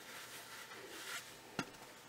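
Quiet room with faint handling noise and a single light tap about one and a half seconds in.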